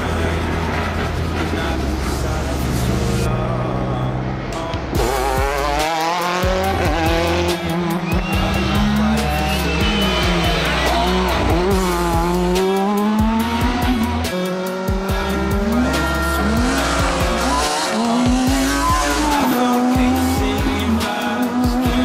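Rally car engine revving hard and rising and falling in pitch through repeated gear changes and lifts, from about five seconds in, with background music throughout.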